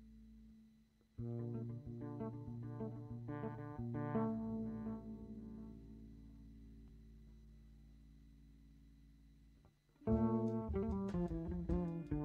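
Electric bass guitar playing solo: a held note fades away, then after a brief pause a phrase of plucked notes and chords rings out and slowly dies away. About ten seconds in, a louder, busier run of notes starts.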